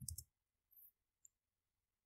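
Near silence with two faint, sharp clicks from a computer keyboard: one a little under a second in and one a moment later, as a search is typed and entered.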